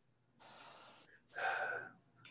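A man's breathing: a faint breath, then a louder breathy gasp about one and a half seconds in.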